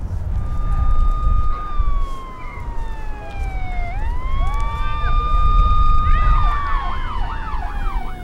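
Police siren wailing: a held tone that slides slowly down and climbs back up, then switches to a fast yelp near the end, over a steady low rumble.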